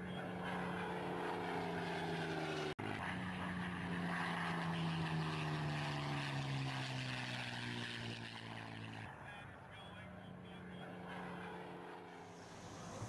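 Propeller aircraft engine droning steadily. Its pitch falls slowly in the middle seconds, as in a pass, and it grows quieter near the end. The sound cuts out for an instant about three seconds in.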